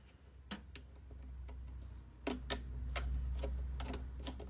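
Hose clamp on a heater's air-outlet ducting being tightened with a screwdriver, giving short, irregular ticks, two or three a second, as the screw turns. A low rumble runs underneath from about a second in.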